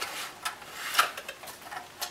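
Packaging being handled: a cardboard box flap opened and a clear plastic clamshell tray slid out, rustling with a sharp click about a second in and a few lighter ticks.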